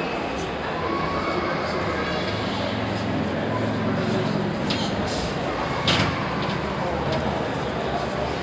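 Ambience of a busy indoor hall: a steady hum with background voices, and one sharp knock about six seconds in.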